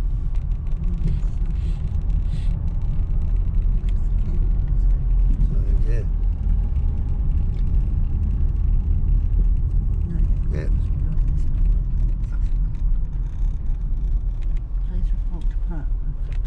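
Car cabin noise while driving: steady low engine and tyre rumble heard from inside the car.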